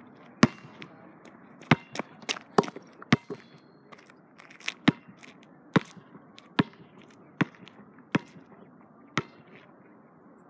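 A basketball being dribbled on a hard outdoor court: sharp bounces, a quick irregular run in the first few seconds, then a steady beat of about one bounce every 0.8 seconds.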